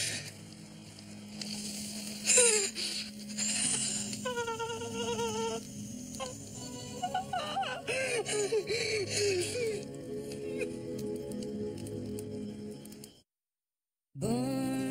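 Dramatic film score with a steady low drone, over which a man sobs and cries out in anguish, with a sharp outburst about two seconds in and wavering wails later. The sound cuts to silence near the end.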